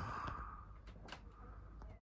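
Quiet workshop room tone with a few faint, small clicks.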